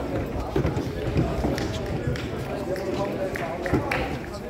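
Indistinct voices of several people talking and calling out at once on the pitch side, with a few short sharp knocks among them.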